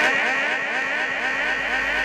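Public-address loudspeaker echo repeating the speaker's last words over and over, slowly dying away, with a steady high ring of microphone feedback held under it.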